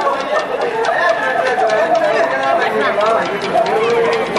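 Several Maasai voices chanting together at once, overlapping lines of song running on without a pause, with a light run of regular ticks beneath.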